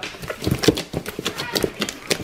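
Several hands squishing and kneading a large tub of slime: a fast, irregular run of wet squelches and sticky pops.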